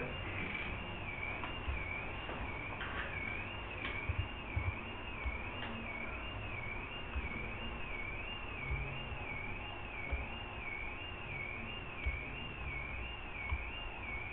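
Low background hum with a faint high-pitched electronic whine that wavers evenly up and down about one and a half times a second, and a few soft taps.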